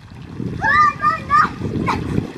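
Water splashing and sloshing as children move about in an above-ground pool, with a child's high voice calling out from about half a second in.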